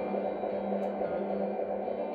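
Live music from the stage: a steady drone of held notes, its lowest note sustained throughout, as a slow song opens.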